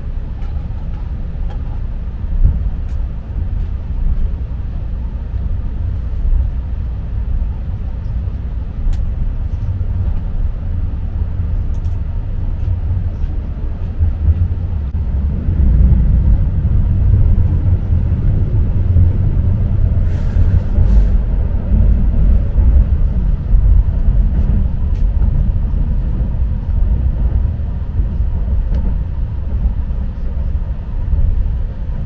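Keihan limited express electric train heard from inside the passenger car while running, a steady low rumble of wheels and motors. It grows louder about halfway through, with a few faint clicks.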